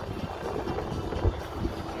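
Wind buffeting a phone microphone, an irregular low rumble that rises and falls in gusts.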